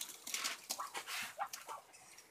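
Muscovy ducks making short, scattered soft calls and hisses, with wet squelches from feed mash being worked by hand.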